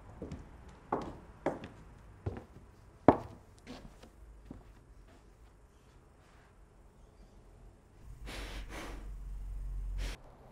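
A woman crying: several short, sharp sobbing breaths in the first three seconds, then a longer, breathy, swelling sob near the end.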